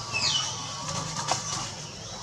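Baby long-tailed macaque giving a single quick, high-pitched squeal that falls in pitch just after the start, with a short sharp click about a second later.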